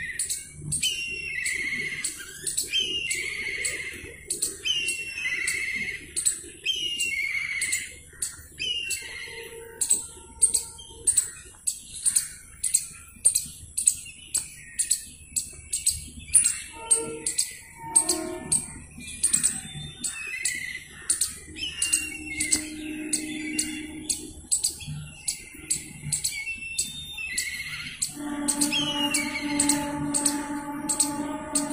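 Birds chirping: a short call repeated about once a second, over fast high-pitched ticking chirps. A steady pitched hum with overtones comes in near the end.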